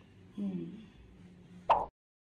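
A woman's short closed-mouth "hmm" while chewing a mouthful of mango, falling in pitch, then a single sharp pop near the end, the loudest sound.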